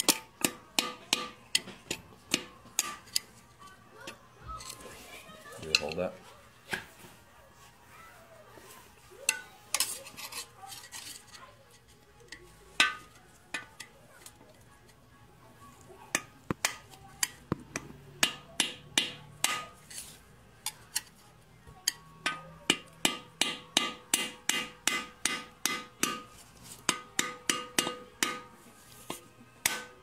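A hammer is striking a screwdriver driven down between an old cylinder sleeve and the block of a Mitsubishi 4D55T diesel engine, cutting a line through the sleeve so it breaks free. The blows are sharp, metallic and ringing, about three a second at the start. They thin out to scattered strikes in the middle, then pick up again to a steady run through the last third.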